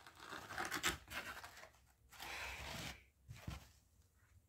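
Glossy packaging of a bundle of hair extensions rustling and scraping as the hair is pulled out of it. Several short rustles come first, then a longer scraping rasp about two seconds in.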